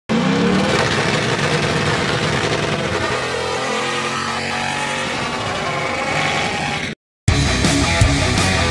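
Pontiac GTO's 389 V8 at full throttle launching down a drag strip, its pitch rising in the first second and then holding at high revs. It cuts off abruptly near the end, and rock music with guitar starts a moment later.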